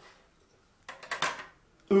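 Small plastic game pieces from the Balance Beans logic game clicking as they are set onto its plastic seesaw beam: a quick cluster of light clicks about a second in.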